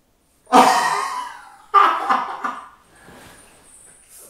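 A man bursting into laughter with his hands over his mouth: two loud outbursts, about half a second and just under two seconds in, each trailing off, then quieter breathy laughing.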